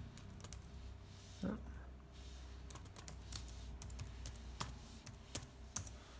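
Lenovo laptop keyboard being typed on: a run of quick, irregular key clicks as a search phrase is entered.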